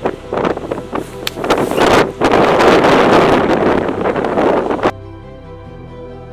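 Strong wind buffeting the microphone in loud gusts, heaviest in the middle, cutting off abruptly about five seconds in, after which soft background music carries on.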